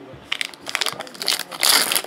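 Foil wrapper of a Panini Contenders Draft Picks trading-card pack crinkling and crackling in the hands, in a run of irregular bursts that grows loudest near the end.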